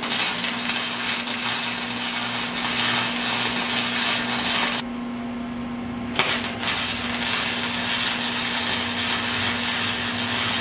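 Electric arc welding, tack-welding steel mounting tabs to a frame: a dense, steady crackle of the arc. It stops about five seconds in, and a second weld starts about a second and a half later. A steady low hum runs underneath.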